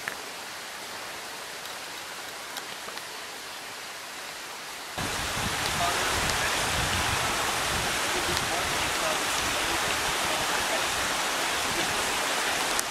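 A quiet, steady hiss of outdoor ambience, then from about five seconds in a much louder, steady rush of running water.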